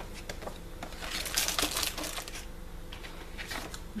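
Packaging crinkling and rustling in the hands as a parcel is opened. The crackling is thickest a second or two in and thins to a few clicks near the end.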